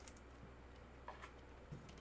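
Near silence with a faint steady hum and three small, faint clicks of a trading card's clear plastic holder being handled.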